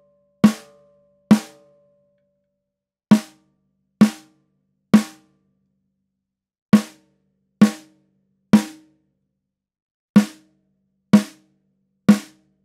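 Snare drum struck singly with a stick in groups of three, about a second between hits, each hit ringing out briefly. The batter head is muffled by a small cut-down piece of Evans EQ Pod gel, which keeps the overtones short.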